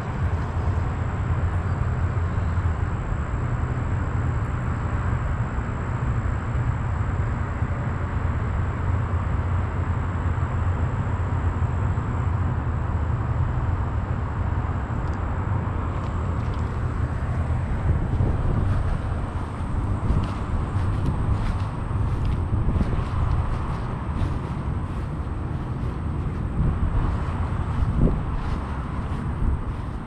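Steady low outdoor rumble with no clear events in it. In the second half, faint light clicks come from a spinning reel being handled.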